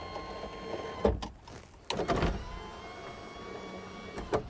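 Electric power window motor in a 1949 Dodge Power Wagon's door, running the glass with a steady whine. It stops with a thunk about a second in, then starts again with another thunk near two seconds and runs on, its pitch rising slightly.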